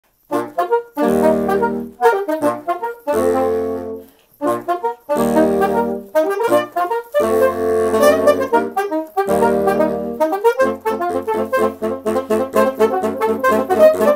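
Saxophone quintet of soprano, alto, tenor and baritone saxophones playing a lively theme arrangement. It opens with short punchy chords separated by brief gaps. From about ten seconds in the music runs on without breaks over a steadily pulsing baritone bass line, about four notes a second.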